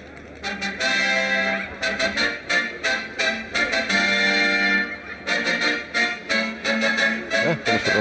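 Fanfare music playing as a rapid string of short, sharp notes. It starts about half a second in.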